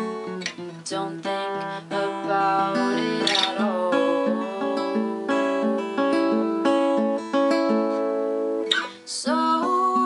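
Acoustic guitar played solo, picking and strumming chords through an instrumental stretch of a song.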